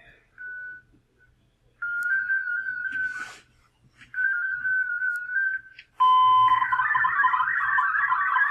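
Amateur radio digital-mode audio from FLDigi: a brief steady tone, then two steady whistle-like tones of about a second and a half each, then about six seconds in a loud, dense warbling of many tones starts, the data signal of a text file being sent by FLAMP over the radio link.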